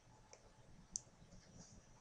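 Faint computer mouse clicks over near silence, the sharpest single click about a second in.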